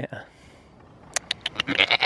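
Goat bleating close up: the tail of one wavering bleat at the start, a few sharp clicks just past a second in, then a new bleat with a rapid stuttering start near the end.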